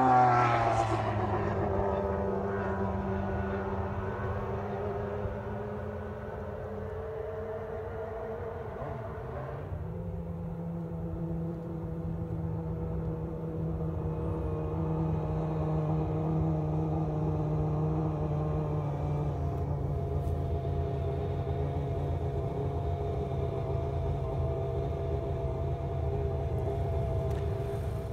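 McLaren-Honda MP4/4's 1.5-litre turbocharged Honda V6 engine, falling in pitch as the car slows at first, then running steadily at low revs. About ten seconds in its note steps up a little and holds.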